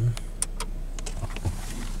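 Steady low hum inside a car cabin, with a few light clicks and taps as the phone filming is moved around.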